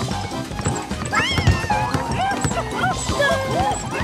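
Cartoon background music with high, squeaky cartoon-character voices letting out short wordless exclamations.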